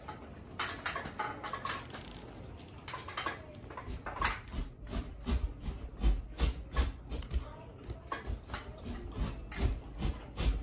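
Knife blade sawing back and forth through ceiling drywall to cut out the broken piece. The strokes are quick and rhythmic, about three a second, with scraping and crumbling of the gypsum board.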